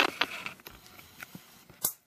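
Bird leg-band cutter working on a parakeet's leg band: a few small clicks as the jaws close, then a sharp snip near the end as the band is cut through.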